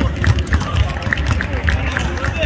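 Players running on a hardwood basketball court: repeated short sneaker squeaks and thudding footfalls, with voices in the background.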